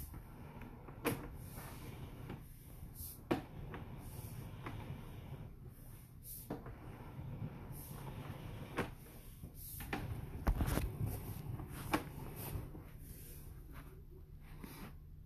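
Irregular clicks and clunks of a sewer inspection camera's push cable being hauled back through the drain line and onto its reel, a loose cluster of louder knocks about ten seconds in, over a low steady hum.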